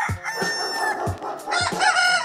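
Rooster crowing: one long held crow early on, then a second one starting near the end.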